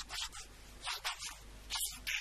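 A man speaking into a microphone in short phrases with brief pauses between them; the recording sounds thin and hissy.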